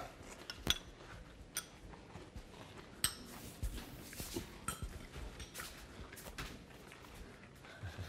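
A spoon clinking now and then against a cereal bowl: a few short, sharp clinks spread over several seconds.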